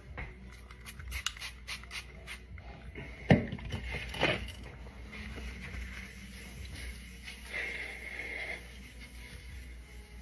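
Paper towel wiping and rubbing ketchup off a granite kitchen countertop, with clicks and taps on the counter and two sharp knocks a few seconds in, the first the loudest. Faint background music runs underneath.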